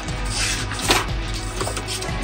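Paper pages of a ring binder being flipped: a few short rustling swishes over a steady low hum.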